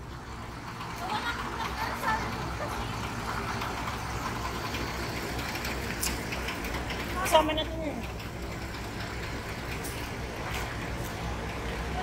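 Bus terminal ambience: a steady low rumble of large vehicle engines under scattered voices, with one short call about seven seconds in.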